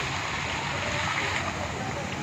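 Steady water splashing and churning as a crowd of koi jostle at the pond surface for food, with faint voices in the background.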